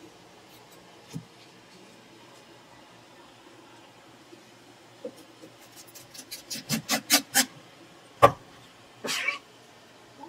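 Knife and eel being worked on a plastic cutting board: a quick run of sharp knocks that grow faster and louder, then one loud hard knock and a short scraping rasp.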